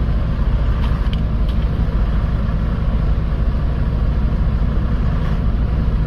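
Semi truck's diesel engine idling with a steady low rumble, heard from inside the cab.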